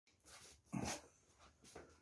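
A dog giving one short bark about a second in, with fainter sounds before and after it.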